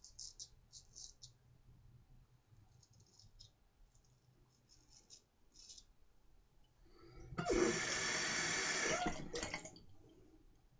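Round-point straight razor scraping through lathered stubble on the neck in short strokes, several in the first six seconds. About seven seconds in, a loud rush of running water lasts for about two seconds.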